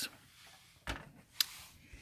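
Handling noise from the oscilloscope's metal case being moved: a soft knock a little under a second in, then a sharp click about half a second later, with quiet around them.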